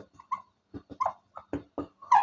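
Marker squeaking on a whiteboard as a word is written: a quick, uneven series of short squeaks and taps, one per pen stroke.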